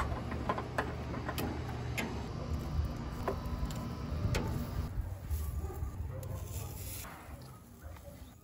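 Metal tongs clicking and tapping against a charcoal grill's metal grate as vegetables are set on it: a few scattered sharp clicks over a low rumble.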